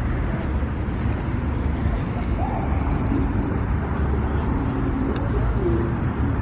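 Steady low rumble of outdoor car-meet ambience with faint distant voices.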